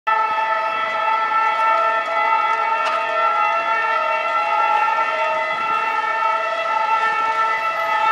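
A Caterpillar 323D tracked excavator at work, giving a steady whine of several held tones that neither rise nor fall as it swings its boom.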